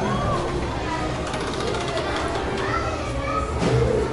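Indistinct voices of several people, children among them, talking in the background with no single clear speaker.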